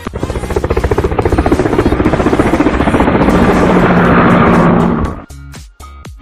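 A loud, rapidly pulsing buzz that cuts in suddenly, swells over the first second or two, holds steady and stops abruptly about five seconds in.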